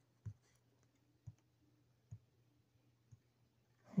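Four faint, short taps, about a second apart, from a fingertip tapping on a tablet's touchscreen.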